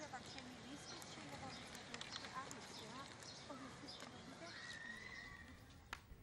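Faint outdoor park background: distant voices with scattered small clicks and knocks.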